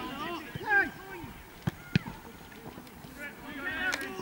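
Footballers shouting on the pitch, with two sharp thuds of a football being kicked, close together a little under two seconds in.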